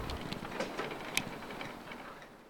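Faint background hiss with a few scattered small clicks, fading out.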